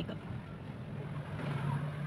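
A low, steady background hum with faint noise, a little stronger in the second half.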